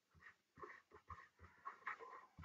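Near silence, with faint short scratches of a stylus writing on a tablet.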